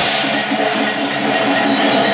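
Chinese procession percussion band playing loudly and continuously: drums beating under a dense, steady clash of cymbals.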